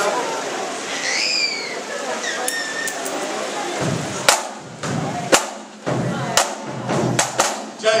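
Audience murmur, then a scout drum band starting to play: sharp drum and cymbal strikes begin about four seconds in and come at an uneven pace.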